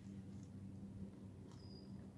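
Faint outdoor quiet with a steady low hum, a few faint clicks and one short, high bird chirp about one and a half seconds in.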